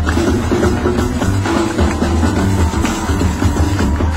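Live Gnawa–jazz fusion band playing, no singing: a deep, busy bass line under drums and a steady clatter of hand percussion, most likely the Gnawa's metal qraqeb castanets.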